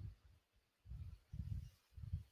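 Quiet room tone with a few faint, low, muffled thumps: one at the start, then about one a half-second apart through the second half.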